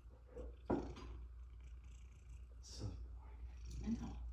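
Domestic cat purring steadily with a very low, deep purr.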